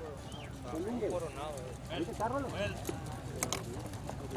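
Horses' hooves on a dirt track as two racehorses walk past, under faint background voices of people talking.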